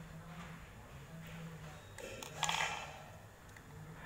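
Small plastic RJ45 keystone jack being handled, with a low steady hum underneath, a few faint clicks, and a short rasping sound about two and a half seconds in.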